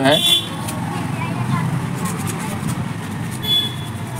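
Steady rumble of road traffic with two short high horn toots, one at the start and one near the end. Under it, sandpaper is being rubbed by hand over the small metal contact points of an electric iron's thermostat to clean off carbon.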